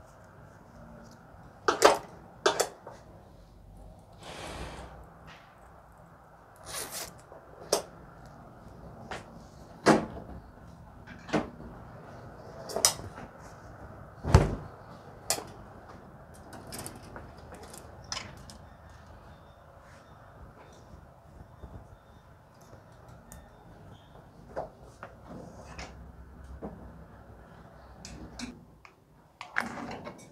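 Plastic clothes hangers and peg hangers clacking against a metal drying rail as laundry is hung up: about fifteen sharp clicks and knocks at uneven intervals, over a low steady background noise.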